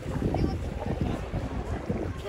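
Wind buffeting the microphone over shallow sea water sloshing around wading legs, with faint voices.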